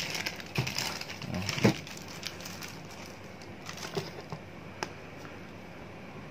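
Clear plastic bag crinkling as a figure's plastic display base is unwrapped from it, busiest in the first two seconds, then a few light clicks of handling.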